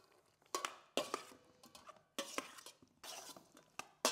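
A metal spoon stirring dressing through roasted beetroot and carrots in stainless steel mixing bowls, giving a scattered series of light scrapes and clinks against the bowl.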